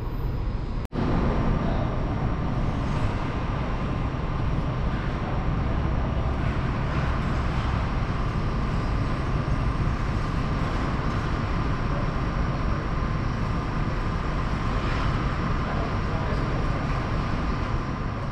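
Steady rumble of an ice arena's air-handling machinery, with a faint steady whine above it; the sound drops out briefly about a second in.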